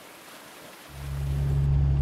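Water running in a small irrigation canal, then, about a second in, the steady low drone of a car engine heard from inside the cabin swells in and holds.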